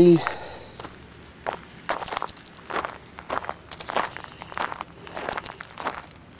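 Footsteps crunching on gravel at a steady walking pace, about two steps a second.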